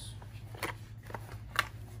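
Hands handling plastic-wrapped board-game pieces and cards in a plastic box insert: a few short rustles and clicks of crinkling plastic and card, the sharpest about one and a half seconds in.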